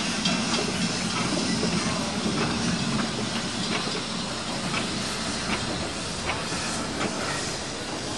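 Steam locomotive pulling a passenger coach slowly past: a steady hiss with the running noise of wheels on rails and a few faint clicks.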